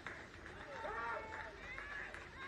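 Players' shouts and calls across an outdoor football pitch, several short voice calls over open-air background noise.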